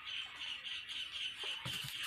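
A bird calling: a fast, even string of high chirps, several a second, going on without a break.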